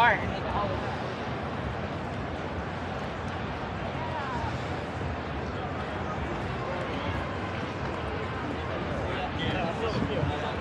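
Steady outdoor street noise with indistinct voices of people talking at a distance, no single voice close or clear.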